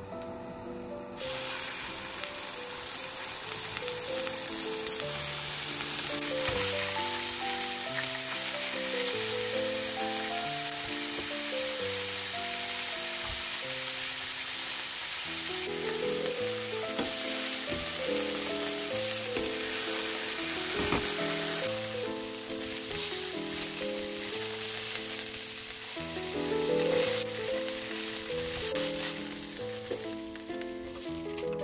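Chicken breast pieces sizzling as they fry in oil in a nonstick frying pan, starting suddenly about a second in, with background music throughout.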